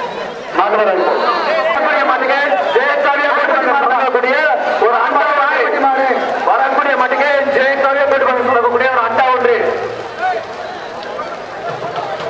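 A man talking without pause, quieter over the last two seconds.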